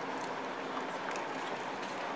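Steady outdoor background noise with a faint low hum and no distinct event.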